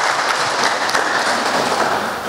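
Applause from people in the hall after an oath of office is completed, a dense patter of clapping that thins out near the end.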